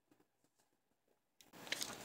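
Near silence: room tone, then faint rustling with a few small clicks in the last half second.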